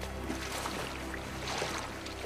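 A horse wading through a river, water splashing irregularly as it pushes through, over background music with steady low sustained notes.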